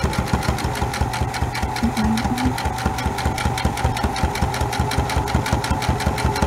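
Electric sewing machine running at a steady speed: a constant motor hum with a rapid, even clatter of needle strokes as a straight seam is stitched.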